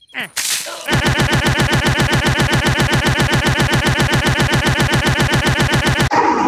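A very short snippet of cartoon audio looped over and over, more than ten times a second, making a loud, steady, buzzing stutter that starts about a second in. This is the rapid-repeat stutter edit of a YouTube Poop.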